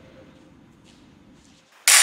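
Faint room tone, then just before the end a sudden loud hissing crash that starts abruptly and fades slowly.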